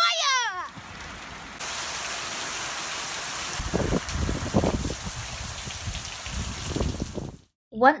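Heavy rain falling, a steady hiss that gets louder about a second and a half in and cuts off suddenly near the end, with uneven rumbling patches through the middle.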